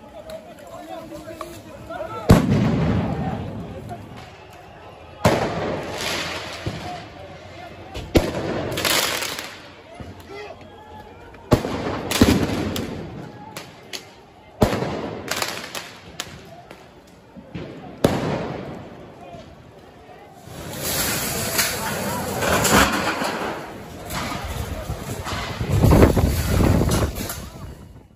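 A series of about six loud explosive bangs, roughly three seconds apart, each with a long echoing tail, amid a street clash between protesters and riot police. A shouting crowd swells in the last several seconds.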